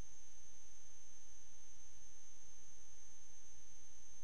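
Steady low electrical hum, with faint high steady tones above it and no other sound.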